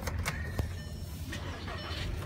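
Low steady rumble inside a car's cabin, with a brief high electronic tone early on and a single click just after half a second.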